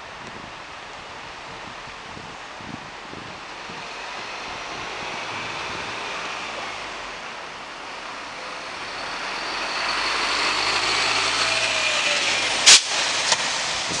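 Road traffic: a motor vehicle's engine and tyre noise swells as it comes closer over the second half. Near the end there is a sharp knock, then a smaller one.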